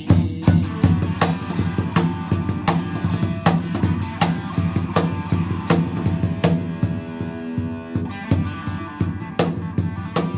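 Electric guitar playing a blues groove with a cajón slapped in a steady beat, the strongest strikes about every three-quarters of a second; instrumental, no singing.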